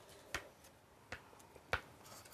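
Three short, faint scrapes of a scraper on a scratch-off lottery ticket as the next panels are scratched open.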